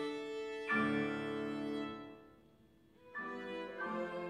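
Violin and piano playing classical chamber music live: a held note gives way to a chord struck just under a second in, which dies away into a brief pause before the two instruments start again about three seconds in.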